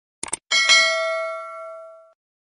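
Two quick clicks, then a bright bell-like ding about half a second in that rings on and fades away over a second and a half: a notification-bell sound effect.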